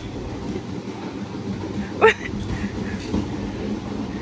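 Outdoor background noise: a steady low murmur of indistinct voices and distant traffic, with one short rising call about two seconds in.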